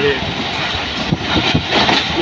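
Steady, loud rushing noise with a few soft rustles, with a man's voice briefly at the start and again just before the end.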